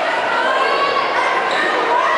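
Basketball bouncing on a hardwood gym floor over the steady chatter of a crowd, in a large echoing gym.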